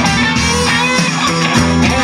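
Live rock band playing an instrumental passage: electric guitar over bass notes and a steady beat.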